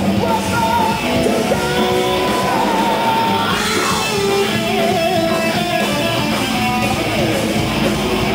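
Heavy metal band playing live: an electric guitar lead of held notes that bend in pitch, over rhythm guitar, bass and drums.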